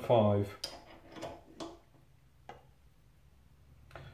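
A few light metallic clicks and knocks, spread over the first half, as a steel connecting rod is handled and set on a weighing fixture in a vise over a digital scale. A voice trails off at the very start.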